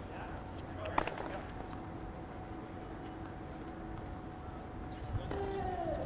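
Quiet outdoor tennis court background with one sharp knock of a tennis ball about a second in. Faint voices call out in the distance near the end.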